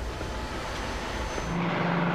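Aircraft engine noise from archival flight footage: a steady rushing roar with a low rumble that switches abruptly, about one and a half seconds in, to a steadier engine drone with a constant hum.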